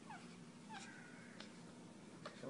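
A newborn baby making faint little squeaks and coos: a short falling squeak at the start and a longer, held one about a second in, over a low steady hum.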